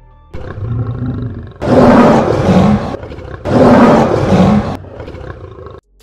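Two lion roars in quick succession, each about a second long and the loudest sounds here, over a short music sting that starts just after the opening and cuts off near the end.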